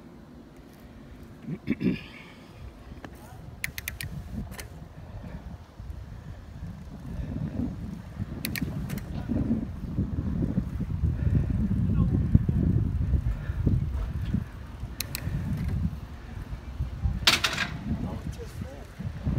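Wind buffeting the microphone of a handheld camera on a moving bicycle: an uneven low rumble that grows louder in the middle and eases toward the end. A few sharp clicks come through, the loudest near the end.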